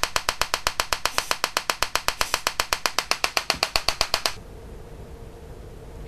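Homemade TEA nitrogen laser firing: a rapid, even train of sharp electrical discharge snaps, about ten a second, that stops suddenly about four seconds in, leaving a faint steady hum.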